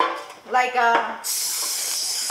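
Hand-held spray bottle spraying in a long steady hiss, starting about a second in, as the loaf pan is greased.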